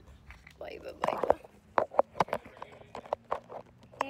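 Irregular sharp clicks and knocks of a phone being handled and moved about, its microphone picking up the handling.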